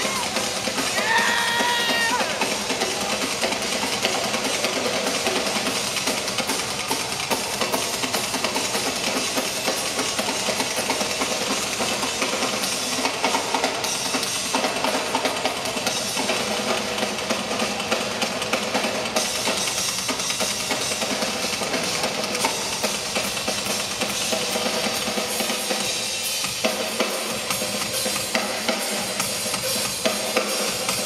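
Live drum kit played fast and without a break in a large arena: kick drum, snare and cymbals in a dense, continuous drum solo, heard from the audience with the hall's echo.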